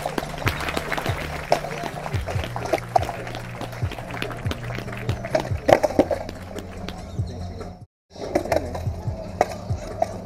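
Music with a steady bass line, with irregular sharp clacks and knocks over it. The sound cuts out completely for a moment about eight seconds in.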